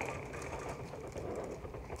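Steady low outdoor background noise, a faint even rumble and hiss with no distinct events.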